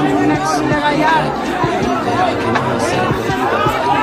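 A large crowd of people shouting and talking over one another, many voices at once and no single speaker standing out.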